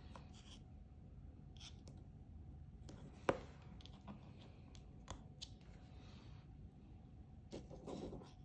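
Faint handling sounds of a small USB adapter and small neodymium magnets on a tabletop: light rubbing and scattered small clicks, with one sharp click about three seconds in.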